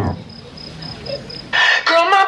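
The dance music cuts off, leaving a low hush with a faint high-pitched beeping, then about one and a half seconds in a loud rooster crow sounds, as loud as the music was.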